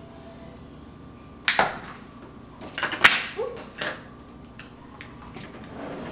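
Kitchen handling noise: a few separate knocks and clicks of dishes and utensils being set down and moved on the counter, the sharpest about three seconds in.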